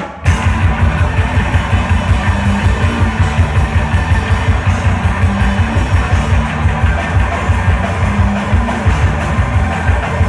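Noise rock band playing live: distorted electric guitars and a drum kit, loud and dense, with rapid drum hits. A brief break right at the start before the full band crashes back in.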